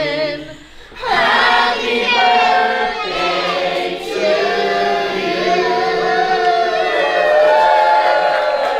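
Voices singing in a choir-like style, with long held notes and vibrato. The singing drops away briefly just under a second in, then comes back.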